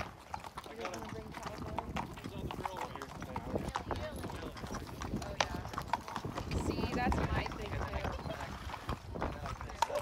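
Several horses walking on pavement, their hooves clip-clopping in an uneven, overlapping patter.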